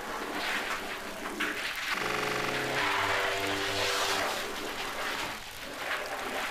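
Horror short film's soundtrack: noisy sound effects, with a held musical chord entering about two seconds in, changing once and fading after about two seconds.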